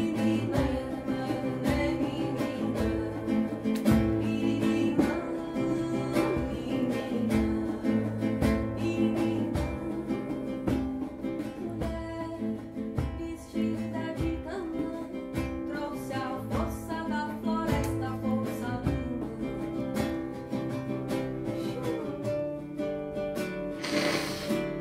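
Acoustic guitar strummed in a steady rhythm, with singing over it: a ritual song.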